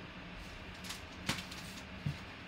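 Paper envelope being handled on a desk: a faint rustle and then a sharp tap a little past halfway, over a low steady room hum.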